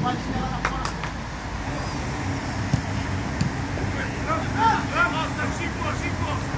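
Football training pitch: a couple of sharp ball kicks in the first second, then short distant shouts from players around four to five seconds in, over a steady low rumble.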